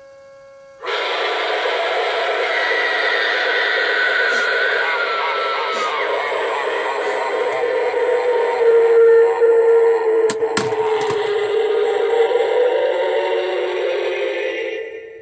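Jumping pop-up zombie animatronic set off: after a faint steady hum, its recorded scream-and-growl sound track plays loudly through the prop's small speaker, starting about a second in, while the figure moves down and back up. Two sharp clicks from the mechanism come about ten seconds in. The owner blames the slow, delayed response on the control board.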